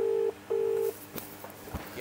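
Ringback tone of an outgoing mobile phone call, heard through the phone's loudspeaker as the call waits to be answered. Two short steady rings sound close together in the first second, the Australian double-ring pattern. The rest is quiet with a couple of faint ticks.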